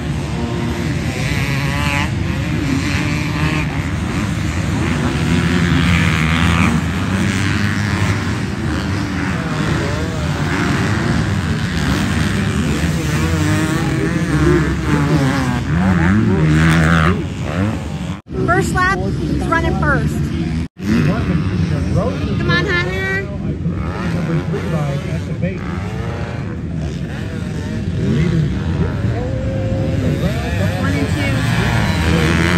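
Several motocross dirt bikes racing on a dirt track, engines revving up and down as they pass, jump and change gear. The sound breaks off sharply twice past the middle.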